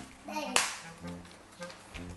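A single sharp smack, like a hand clap, about half a second in.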